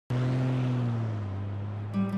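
A car passing close by and driving away, its engine and tyre noise slowly fading.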